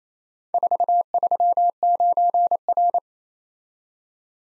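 Morse code sent as a single steady tone, keyed in quick dots and dashes for about two and a half seconds, starting about half a second in: the characters 4, 3, 9, R, each with a short gap between characters.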